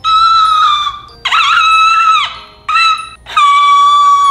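Puppy whining: four long, high whimpering cries, the second wavering in pitch and the third short.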